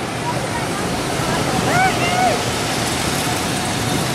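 A steady rushing noise on a phone microphone, with one short, high-pitched call from a person's voice about two seconds in.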